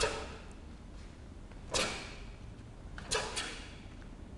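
Sharp snaps of taekwon-do uniforms as the students strike and block through their pattern: one at the start, one a little before two seconds in, and a quick pair near the end, each with a short echo.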